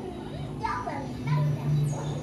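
Voices in the background, children's among them, with music, over a steady low hum.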